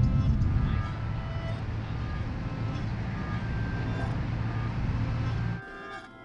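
A steady low rumble of outdoor background noise with faint sustained music notes above it. The rumble cuts off suddenly about five and a half seconds in, leaving quieter music.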